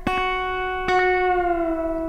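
Electric guitar, played clean with slapback delay, picks a held F sharp on the second string twice, about a second apart. Each pick attack is followed closely by a short echo.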